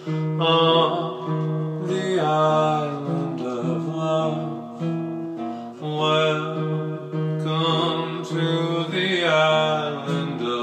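Acoustic guitar playing an instrumental passage, chords struck about every one and a half to two seconds and left ringing.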